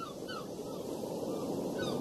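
A bird giving short arched calls in quick succession, a couple at the start and one more near the end, over a steady outdoor hiss of wind or ambience that grows louder toward the end.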